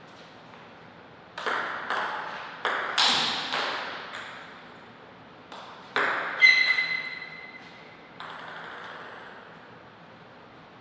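Table tennis ball clicking off paddles and the table in a short rally, a string of sharp ticks between about a second and a half and six seconds in. About six and a half seconds in, a sharp ringing tone starts suddenly and fades over about a second and a half.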